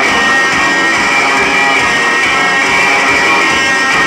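Garage-punk band playing live, a loud and steady instrumental passage carried by strummed electric guitars, with no vocals.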